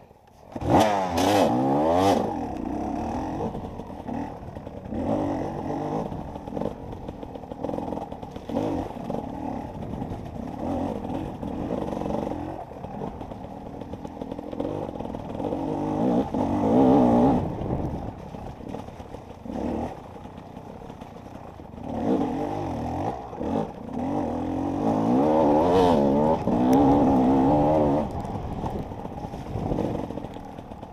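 Enduro dirt bike engine revving up and down as the rider works the throttle over rough ground. It jumps to high revs about a second in, with louder surges near the middle and through much of the second half.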